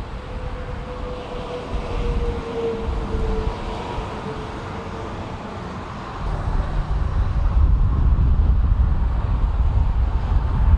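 Road traffic on a highway feeder road: a steady hum that sinks slowly in pitch over the first few seconds as a vehicle goes by, over low tyre and engine rumble. The rumble grows louder from about six seconds in.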